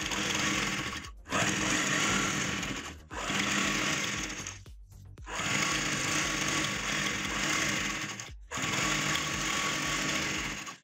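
Usha sewing machine stitching curtain tape onto curtain fabric, running in steady spells of about one and a half to three seconds with four brief stops as the fabric is guided.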